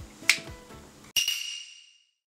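A single sharp finger snap, then about a second in a bright ringing chime sound effect that dies away.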